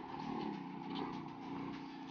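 Faint outdoor background noise with a low, steady hum, like distant traffic.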